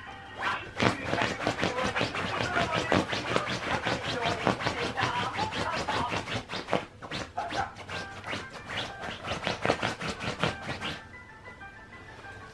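A Shiba Inu digging at a futon with its front paws, claws scraping the cotton sheet in a fast run of strokes, several a second, which stops about a second before the end.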